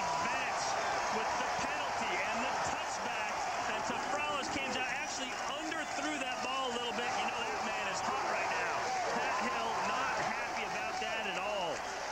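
A stadium crowd cheering and shouting after a home-team touchdown, many voices overlapping in a steady, continuous roar.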